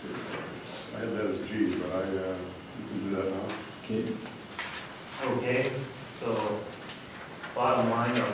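Speech only: people talking in a meeting room.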